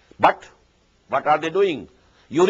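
A man's voice: a short, sharp syllable about a quarter second in, then a brief spoken phrase in the second half.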